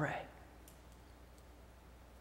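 Near silence after the end of a spoken word: quiet room tone with a low steady hum and two faint clicks.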